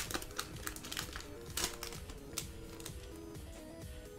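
A foil Pokémon booster pack being torn open and its wrapper crinkled: a few sharp crackles, the loudest right at the start and another about a second and a half in, with quiet background music underneath.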